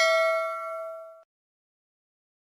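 A bell 'ding' sound effect, of the kind that goes with a subscribe-button animation, rings with several clear overtones and fades. It is cut off abruptly about a second in.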